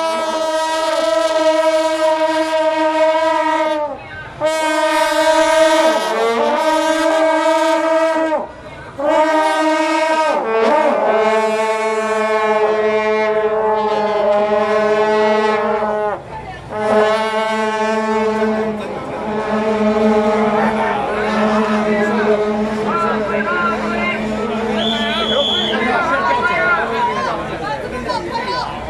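Several long straight processional horns with flared bells blowing long held notes together, in four or five blasts with short breaks between. In the last third the horn notes thin out and crowd chatter takes over.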